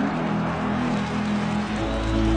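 Crowd murmur in a football stadium under soft background music with held low notes; a deep bass note comes in near the end.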